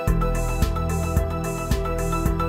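Live-sequenced electronic music: held synth notes, with a deep kick drum and bass coming in right at the start. The kick beats about twice a second at 110 BPM, and a hissing high percussion layer comes and goes.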